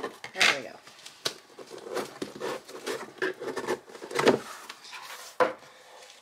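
A cardboard mailer box being cut open and its flaps pulled back: scraping of cardboard and tape, with several sharp knocks of cardboard, the loudest about four seconds in.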